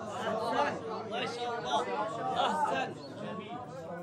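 Several men's voices overlapping.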